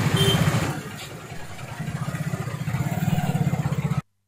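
A motorcycle engine running close by with a rapid, even low beat. It eases off about a second in, then builds up again toward the end.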